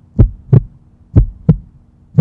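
Heartbeat sound effect: paired low thumps in a regular lub-dub, about one pair a second, over a faint steady hum.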